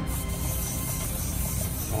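A dead-shorted wire plugged into a port of a Powerbox Mercury power system, hissing as its lead burns and melts off in a cloud of smoke. Background music runs underneath.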